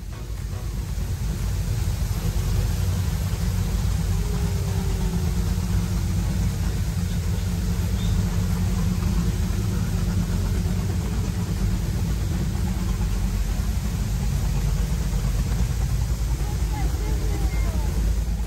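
Powerboat engines running at low speed under a steady rush of falling water from a waterfall, with a deep continuous rumble.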